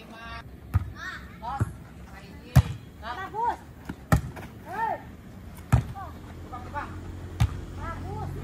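A volleyball being struck by hands and forearms in a rally: about six sharp slaps a second or so apart, the loudest about two and a half seconds in. Players' short calls come between the hits.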